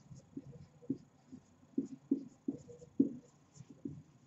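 Felt-tip marker writing on a whiteboard: a run of short, irregular strokes as letters are drawn.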